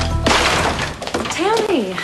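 Glass smashing: one sudden crash about a quarter second in that fades out over most of a second, as a room is trashed in a break-in.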